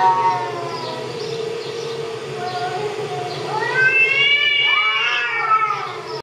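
Domestic cats yowling at each other in a face-off, played back from a video. There are long, wavering caterwauls: one slides down in pitch over the first second, and a louder, drawn-out one rises and falls through the last two and a half seconds.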